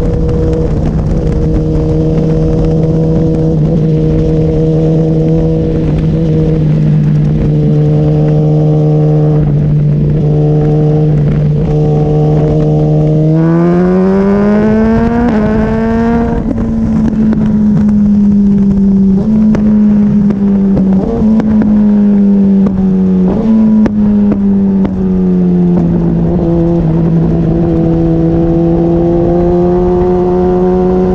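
Sport motorcycle engine at speed, holding a steady pitch through the first half, then climbing steeply about halfway through as the bike accelerates, followed by several drops and climbs in pitch as it shifts gears and changes speed. Rushing wind and road noise run underneath.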